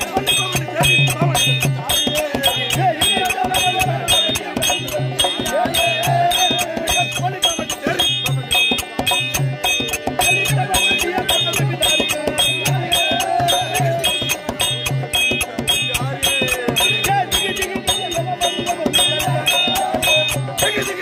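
Therukoothu accompaniment: a drum and clashing hand cymbals keeping a fast, steady beat, with a wavering melody line running above it.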